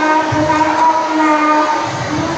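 A child chanting Quran verses in melodic tilawah style, holding long, steady notes.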